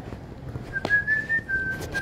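A person whistling a single held note for just over a second, starting shortly before a second in; the note rises slightly and then drops a step. A sharp tap lands just as the whistle begins.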